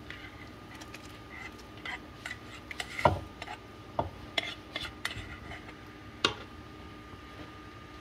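Spoon scraping and knocking against a nonstick frying pan as fried onion and carrot are scraped out into a pot of soup, then stirring in the pot. Scattered sharp knocks, the loudest about three seconds in and about six seconds in.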